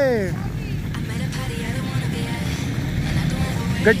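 Small quad bike (ATV) engine running steadily at low speed, a low even rumble between a sung call at the start and a shout near the end.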